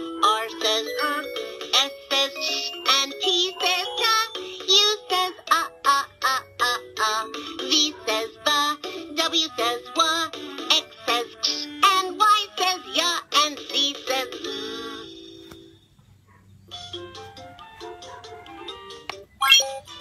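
VTech Letter Sounds Learning Bus toy playing its phonics alphabet song: a synthetic voice sings the letter sounds over a children's tune. The song ends about three-quarters of the way through, leaving a short lull.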